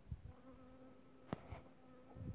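Honey bee buzzing faintly: a steady hum with a few overtones that sets in about half a second in. A single sharp click about halfway through.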